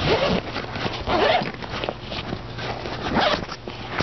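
The metal zipper of a fabric book bag being pulled open in a few scraping strokes.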